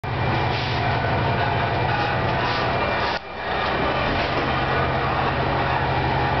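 Gas-fired wheat puffing machine running: its electric motor and belt-driven rotating drum give a steady mechanical rumble with a low hum. The sound dips briefly about three seconds in.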